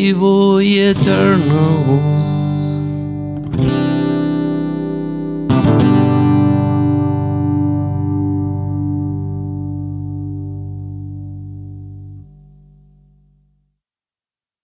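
Acoustic guitar playing the closing chords of a song. A last sung note ends about two seconds in, then two strummed chords follow. The final chord rings on and slowly fades out near the end.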